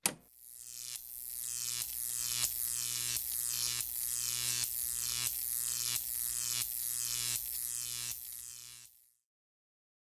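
Electronic logo-sting sound effect: a sharp hit, then a steady low hum with a pulse and a falling whoosh that repeats about every 0.7 s. It cuts off about nine seconds in.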